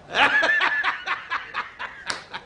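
A man laughing hard: a loud burst of laughter shortly after the start, then rapid short 'ha' pulses that fade toward the end.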